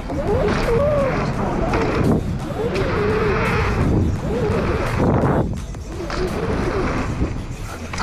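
Wind buffeting a helmet-camera microphone and mountain bike tyres rolling over packed dirt, with a few knocks from bumps and jumps.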